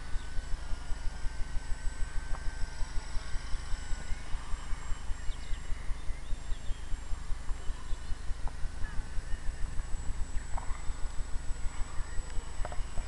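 A low, rhythmic pulsing rumble at about five or six beats a second, with a few faint short chirps from birds.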